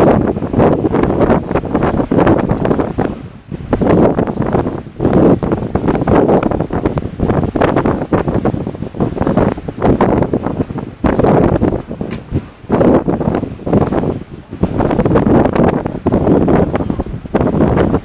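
Wind buffeting the camera's microphone, a loud rumbling noise that swells and drops in uneven gusts every second or two.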